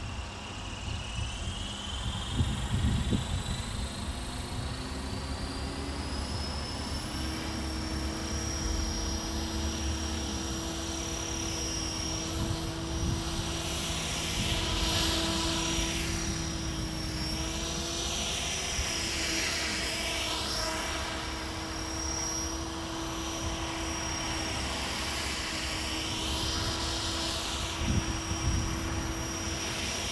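Tarot 500 electric RC helicopter spooling up: its motor and rotor whine rises in pitch over the first several seconds, then holds steady as the rotor comes up to speed. Later the whine wavers up and down in pitch as the helicopter flies.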